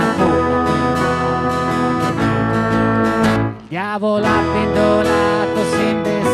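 Live acoustic guitar strummed along with keyboard accompaniment, as an instrumental passage of a folk song. The music drops out briefly a little past halfway, then picks up again.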